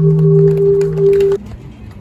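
Sustained droning tones of a film's end-credits music, played over the screening's loudspeakers, cutting off abruptly a little over a second in and leaving only faint background noise.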